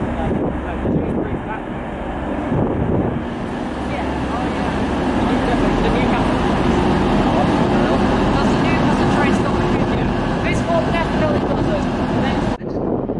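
TransPennine Express Class 185 diesel multiple unit running into the platform and drawing past, its diesel engine and wheels growing louder from about four seconds in and holding steady as the carriages pass.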